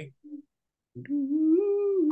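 A man humming a drawn-out "mmm" with closed lips, starting about a second in and rising slightly in pitch before holding, after a brief short hum near the start.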